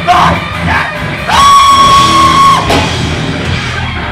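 A live rock band playing loudly, with drums, guitars and yelled vocals. About a second in, a single high tone is held steady for over a second, then drops away.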